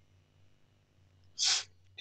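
A single short, hissy breath noise from a person at the microphone, about a quarter of a second long, roughly one and a half seconds in.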